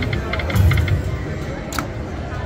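Ainsworth 'Temple Riches' video slot machine playing its electronic reel-spin sounds: a quick run of short chiming ticks over a low, steady background din. There is a sharp click near the end.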